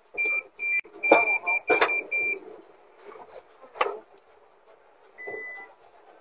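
A run of about seven short, high electronic beeps at one pitch over the first two and a half seconds, then a single lower beep near the end, with a few sharp knocks and some faint voices.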